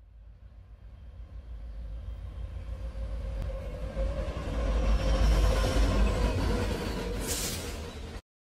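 Train sound effect: a low rumble that grows steadily louder as the train approaches, with a short hiss near the end.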